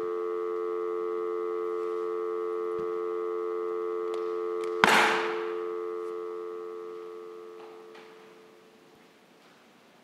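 Telephone dial tone, a steady two-note hum. A sharp click comes about five seconds in, after which the tone fades away over the next few seconds: the call has been cut off.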